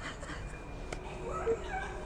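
Faint, short whimpering cries from the film's soundtrack, rising and falling in pitch, mostly in the second half.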